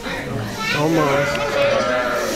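Unintelligible chatter and exclamations from several onlookers, children's voices among them.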